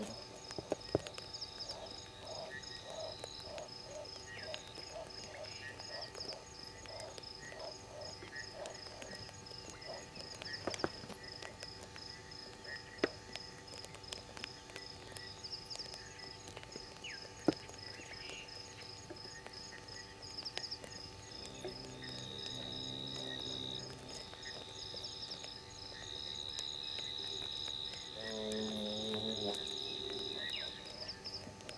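Night chorus of insects and frogs: a steady, pulsing high-pitched insect trill throughout, with a second, steadier trill at the start and again from about two-thirds of the way in. Low frog calls come about two a second for the first ten seconds, and again near the end. A few sharp clicks stand out.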